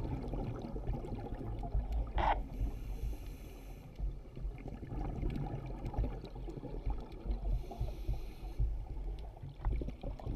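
Scuba diver's breathing heard underwater: a low, uneven bubbling rumble of exhaled air, broken twice by the hiss of a breath drawn through the regulator, once about two and a half seconds in and again near eight seconds.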